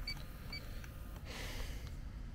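Inficon D-TEK Stratus refrigerant leak detector beeping, short high beeps about half a second apart, twice in the first second and then stopping, as its probe sniffs along the suction line where it has been picking up leaking refrigerant. A brief burst of noise follows about a second later.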